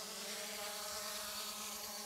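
A flying insect buzzing steadily on one pitch, faint.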